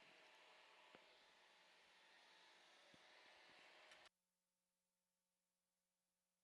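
Near silence: a faint hiss that drops away to an even quieter background about four seconds in.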